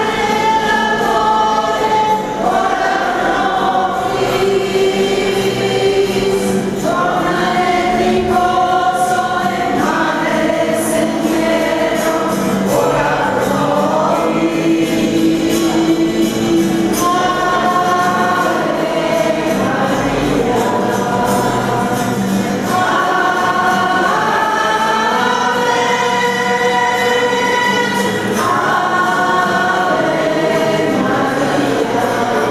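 Small church choir of mostly women singing a hymn together in long, held notes that change pitch every second or two.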